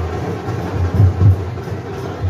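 Drums beating out a rhythm of deep, repeated beats.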